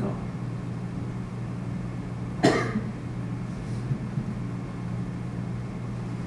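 One short cough about two and a half seconds in, over a steady low room hum.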